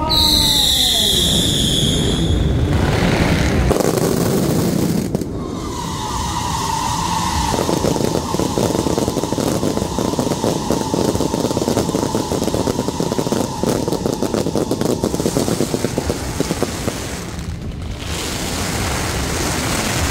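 Daytime fireworks: in the first couple of seconds several whistles fall in pitch. From about five seconds a long steady whistle sounds over dense, rapid crackling, which dies down a few seconds before the end.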